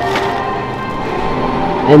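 Grocery-store ambience with soft background music playing.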